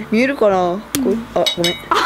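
Mechanical pencil being clicked: a sharp click about halfway, then a few light metallic clicks, among laughing voices.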